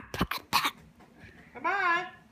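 A child's voice making wordless sounds: a few short coughlike bursts near the start, then a brief pitched vocal sound that rises and falls near the end.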